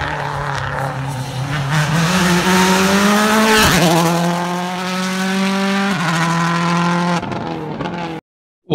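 Rally car engine running hard at high revs: its note climbs over the first few seconds, breaks sharply about halfway through, then holds high and stops shortly before the end.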